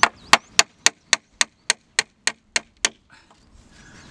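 Hammer driving a nail through a reclaimed wooden board: about eleven quick, sharp strikes, roughly four a second, stopping about three seconds in once the nail is in and has come through the other side.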